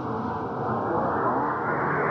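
Ambient electronic music: held drone tones give way to a swelling, whooshing wash of noise that rises steadily in pitch, like a passing jet.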